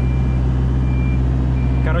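JCB 3CX backhoe loader's diesel engine running steadily while its reversing alarm sounds three short, high beeps.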